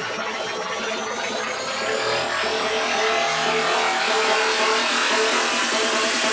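Electronic dance music in a build-up: the bass is cut out while a noise sweep rises steadily in pitch and a synth note pulses, the music getting gradually louder.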